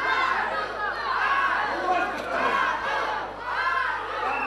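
Crowd of spectators shouting and calling out to the boxers during an amateur boxing bout, many raised voices overlapping.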